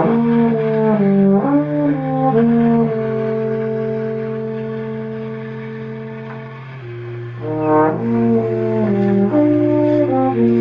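Bass clarinet and trombone playing slow, long held notes together over a low sustained note, the upper line moving to new pitches about a second and a half in and again near the end, after a slight fade.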